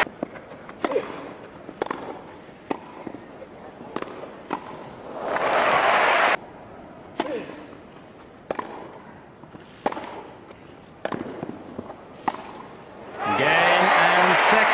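Tennis ball struck by racquets in rallies, sharp single pops about a second apart. A short burst of crowd applause about five seconds in cuts off suddenly, the hits resume, and applause rises again near the end.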